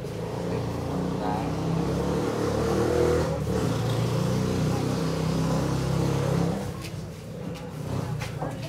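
A motor vehicle engine running, its low hum swelling from about half a second in and dying down near the end.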